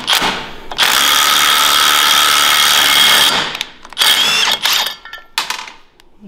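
Cordless Hercules brushless impact driver spinning a backwards lug nut down a wheel stud, drawing the stud into a trailer wheel hub. It makes one long run of about two and a half seconds, then a shorter run about a second later, and a brief burst near the end.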